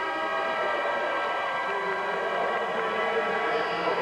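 Spectators' horns sounding together in one steady, held chord over the crowd in a ski race's finish area.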